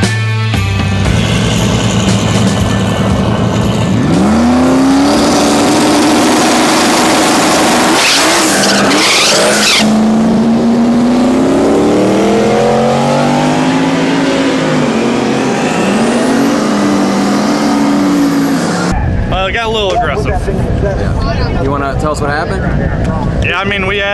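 A drag-racing Fox-body Mustang: hissing tyre noise from a burnout at first, then the engine revs up and the car launches about four seconds in. Its pitch climbs, drops and climbs again as the rear tyres spin on the pass. The car sound gives way to voices near the end.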